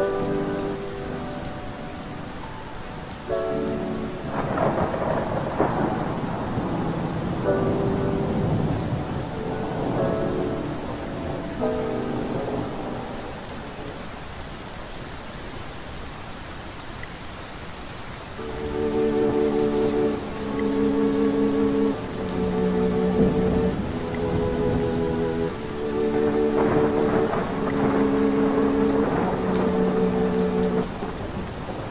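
Steady rain with rolls of thunder, mixed with soft lo-fi chords. The chords come and go at first, then play steadily, changing about every second, from a little past the middle.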